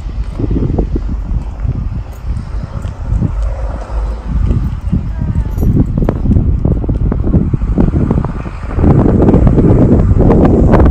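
Wind buffeting an outdoor microphone: a loud, gusting low rumble, louder near the end.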